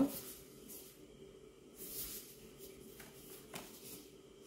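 Faint rustling and sliding of glossy card and paper as a large vinyl record sleeve and print are pulled out of their packaging and handled, with a soft swell of sliding about two seconds in and a small tick near the end.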